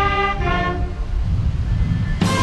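Military brass band playing a national anthem: held brass chords that break off less than a second in, leaving a low rumble through the pause before the next phrase.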